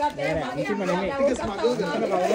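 Several people talking at once: overlapping group chatter.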